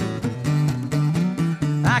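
Live acoustic guitar strumming with a pair of hand drums struck in time, a folk-blues groove between sung lines. A sung word comes in right at the end.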